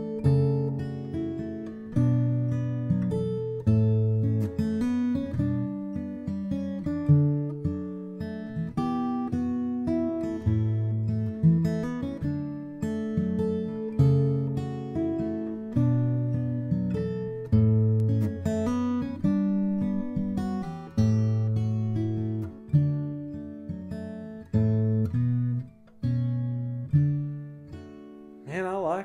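A 1941 Gibson J-55 mahogany acoustic guitar played in a rhythm pattern: single bass notes alternating with strummed chords, each attack ringing out and fading before the next.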